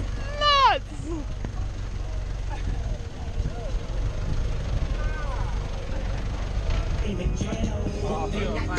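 Steady low rumble of a four-wheel-drive ute working slowly down a rutted sandy track. A short laughing whoop comes right at the start, and faint voices follow.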